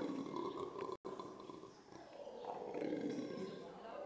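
Monkeys screaming, a continuous wavering call that sags and then swells again. The sound drops out completely for an instant about a second in.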